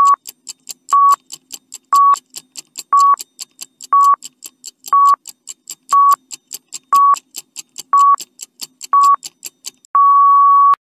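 A countdown-timer sound effect: a short electronic beep once a second, ten in all, with fast ticking of several ticks between each beep.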